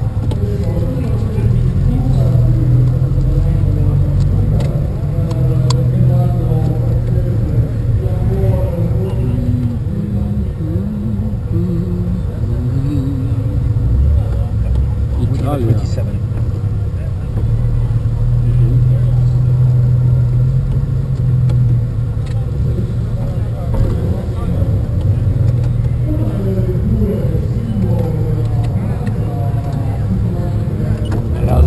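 Citroën Traction Avant 15 Six's straight-six engine idling with a steady low hum, with people talking over it.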